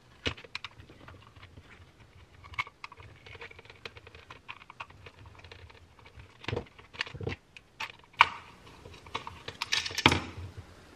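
A screwdriver working on a plastic handheld winch switch, making irregular light clicks and taps, with a sharper knock about eight seconds in.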